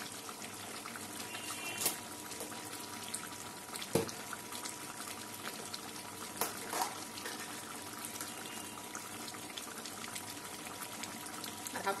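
Goat curry simmering in an open pan: a steady soft bubbling with small crackles and a few sharper pops from the gravy.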